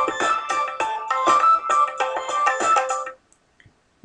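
Loop-based beat playing back in Reason: a hip-hop drum loop and tabla loop from Dr. Rex loop players, with steady melodic notes over them. It stops suddenly about three seconds in.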